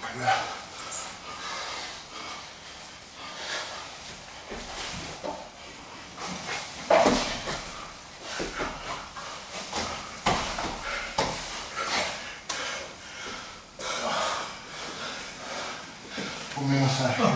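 Two grapplers wrestling on mats: heavy breathing and grunts, with bodies scuffing and knocking against the mat at irregular moments and the loudest knock about seven seconds in.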